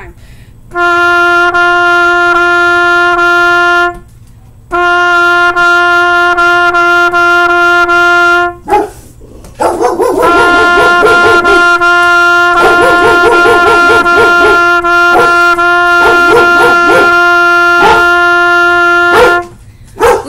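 Trumpet playing a rhythm on one repeated note, concert F (written G for trumpet), in three tongued phrases separated by short breaths. A dog barks repeatedly over the trumpet through the second half.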